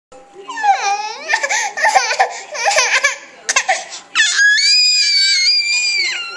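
A baby's fake crying: choppy high-pitched whimpers and squeals through the first few seconds, then one long, high cry held for nearly two seconds near the end.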